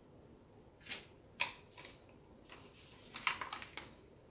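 Gloved hands handling a plastic paint cup over a plastic pouring container: a few short scrapes and clicks about a second in, then a run of crackly rustles in the second half.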